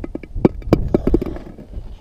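A quick, irregular run of sharp clicks and knocks, about eight in just over a second, over wind rumbling on the microphone.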